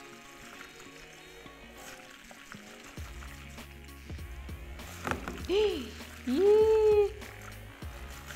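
StylPro battery-powered makeup-brush spinner running with a steady low hum from about three seconds in, spinning a brush in a bowl of cleaning solution. Two short hummed vocal sounds come in just after the middle and are the loudest part.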